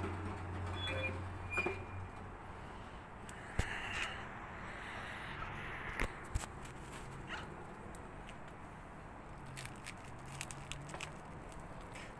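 Quiet background with a few short sharp knocks and clicks in the middle, and a low steady hum during the first two seconds.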